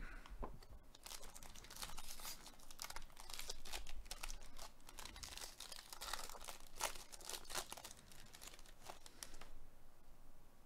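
The plastic wrapper of a 2022 Topps Series 1 baseball card jumbo pack crinkling and tearing as it is opened by hand. It makes a dense run of small crackles that stops just before the end.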